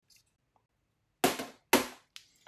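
Two sharp knocks about half a second apart, from objects being set down or knocked on the table.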